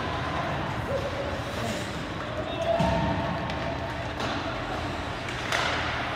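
Ice hockey play in an indoor rink: scattered sharp knocks of sticks and puck on the ice and boards, the sharpest near the end, over spectators' voices and the echo of a large hall.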